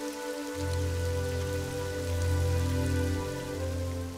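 Soft, sustained ambient music: a pad of held notes, joined by a deep low note about half a second in, over a steady rain-like hiss.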